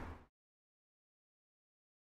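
Near silence: the last of the music dies away in the first moment, then complete digital silence.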